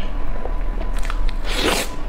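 Close-miked biting and chewing of food, with small wet mouth clicks and a louder noisy burst a little before the end.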